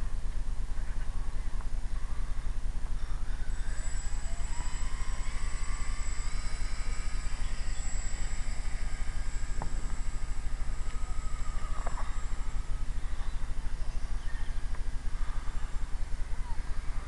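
Motor of a small radio-controlled foam autogiro whining thinly: the pitch rises about four seconds in as it flies off, holds steady, then fades out after about twelve seconds as the model climbs away. Steady wind rumble buffeting the microphone throughout is louder than the motor.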